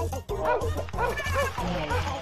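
Cartoon dog barking in a quick run of short barks, about three a second, over background music with a steady low pulsing beat.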